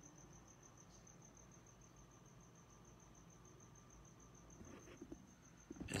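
Near silence, with a cricket chirping faintly in a high, even pulse of about eight chirps a second.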